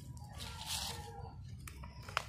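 Leaves of a waru (sea hibiscus) plant rustling as a leaf is picked off, with a couple of small clicks near the end.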